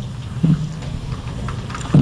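A steady low hum in a pause between spoken sentences, with one short voiced sound about half a second in.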